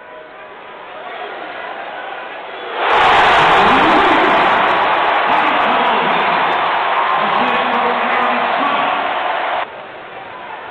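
Basketball arena crowd cheering loudly after a made Alabama three-pointer, breaking in suddenly about three seconds in and cutting off abruptly near the end. Before it, quieter arena noise with faint voices.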